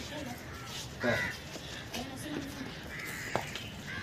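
Harsh, caw-like bird calls, one about a second in and another around three seconds in, with a sharp click just after the second.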